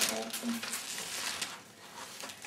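Glossy magazine pages and papers rustling and crinkling as a baby paws at them and pulls them out of a tipped wicker basket, a quick run of small crackles.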